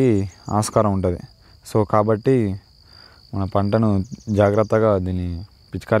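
A man talking in short spells over a steady, high-pitched insect trill, with the voice the loudest sound. The trill is typical of crickets.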